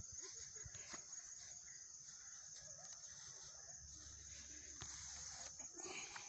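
Near silence: faint outdoor background with a steady high hiss and a few soft clicks and rustles.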